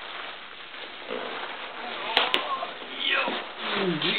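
Bubble wrap crinkling and a cardboard box rustling and scraping as a heavy vacuum tube is worked out of its packing, with two sharp clicks a little over two seconds in.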